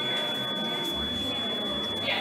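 A steady, high-pitched electronic tone held without change, over indistinct game-center background noise and faint voices.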